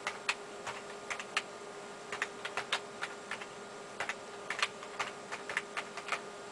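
Keys being typed on a computer keyboard: about twenty sharp clicks in uneven runs as a line of code is entered, over a faint steady hum.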